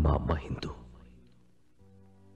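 A loud, breathy, whispered vocal outburst in the first second, fading out, over a low sustained drone of dramatic background music.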